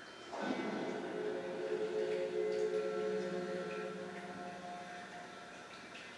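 Synthesizer sound of a 'Surround Sound' logo bumper on a VHS tape, heard through a TV speaker: a sudden swooping entry about half a second in, settling into a held chord of several steady tones that slowly fades.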